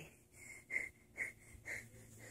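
Faint breaths close to the microphone: about four soft, short puffs of breath.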